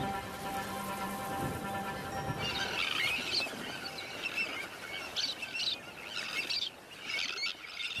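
A Sandwich tern breeding colony calling: short, high calls in quick clusters from about two and a half seconds in, the begging cries of chicks for food among the adults. Background music holding a long chord fades out as the calls begin.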